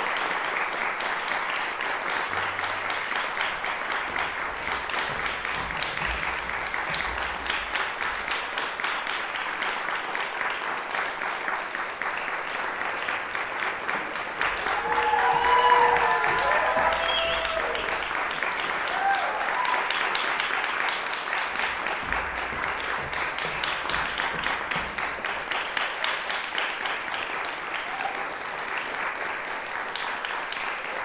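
Concert audience applauding steadily, swelling about halfway through with a few voices cheering.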